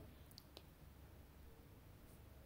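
Near silence: faint room tone with two small, faint clicks about half a second in.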